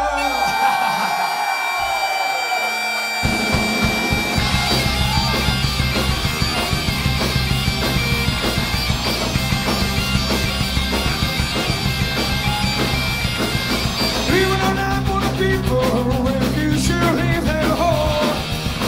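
Celtic punk band playing live: bagpipes skirling over electric guitars, bass and a drum kit. The bass and drums come in about three seconds in and keep a driving beat under the pipes.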